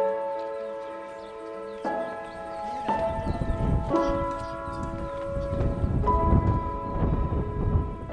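Slow background piano music, with sustained notes and chords struck every one to two seconds. A low outdoor rumble fades in beneath it from about three seconds in.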